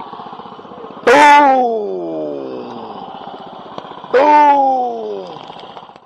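FPV racing quadcopter's brushless motors and propellers heard from its onboard camera: a steady low motor hum, then two sudden throttle blips about three seconds apart, each jumping to a loud whine that falls in pitch as the throttle comes off.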